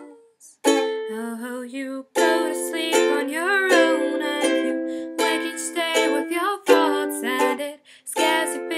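Ukulele strummed in chords while a woman sings a slow melody, in a small room. The playing drops out briefly just after the start, then resumes.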